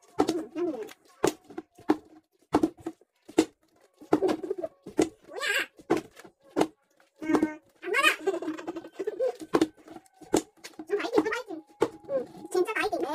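Small plastic bottle flipped and landing on a table, a string of sharp knocks, mixed with short bursts of voice.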